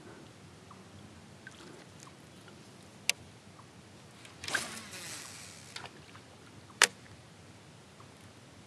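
Small handling noises from a fishing kayak: a sharp click about three seconds in and another near the end, with a rush of rustling, splashy noise lasting about a second between them, over a faint steady background.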